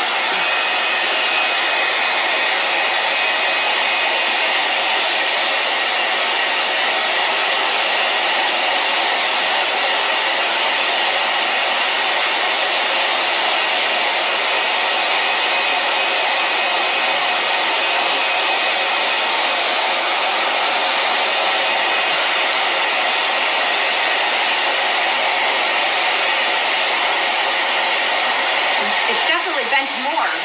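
iTeraCare THz wand's built-in fan blowing steadily, a hair-dryer-like rush of air at an even level, with a faint high whistle in the first few seconds.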